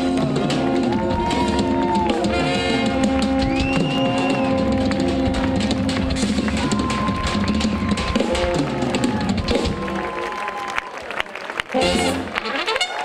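Balkan brass band playing live, with trumpets and tenor horns holding long notes over accordion, bass drum and drum kit, as the tune winds down to its end. The held notes give way about ten seconds in, and there is a loud closing hit near the end.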